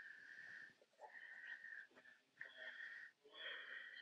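Faint breathing with a whistling note: four short breaths in a row, each a little under a second long.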